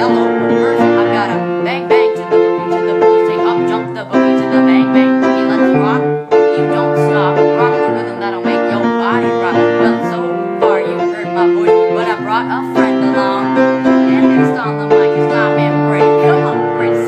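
Piano playing a repeating progression of held chords that change every second or two.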